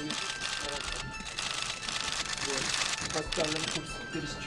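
Press photographers' camera shutters clicking rapidly in a dense, continuous clatter, with men's voices talking over it from a little past halfway.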